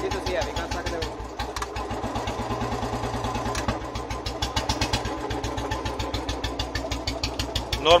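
Royal Enfield Bullet single-cylinder engine idling steadily, its exhaust giving an even, rapid thump, from a silencer set up by a mechanic for the Bullet sound.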